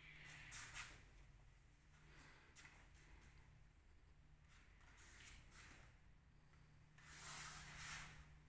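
Near silence in a large hall with a low steady hum, broken by a few faint, short swishes of a child's karate uniform as he performs a kata, two of them about half a second in and the strongest near the end.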